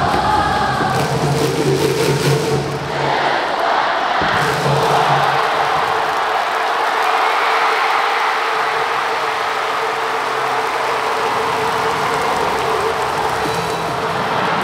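A huge baseball crowd singing a player's cheer song in unison over stadium PA music. About three seconds in the music drops out and the singing gives way to steady crowd cheering and shouting.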